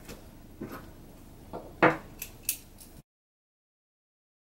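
A few light clicks and knocks of small craft supplies (a glue stick, cardboard and a pen) being put down and picked up on a wooden table. The sound cuts off to silence about three seconds in.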